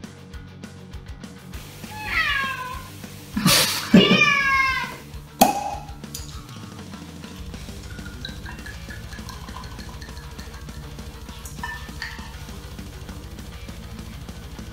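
Cork being drawn out of a wine bottle with a wing corkscrew: high squeaks that slide down in pitch as the cork twists against the glass neck, ending in a sharp pop about five seconds in.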